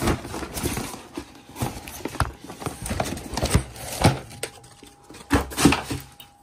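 Cardboard packaging and a hard plastic case being handled and set down on a desk: an irregular run of knocks, thumps and rustling scrapes.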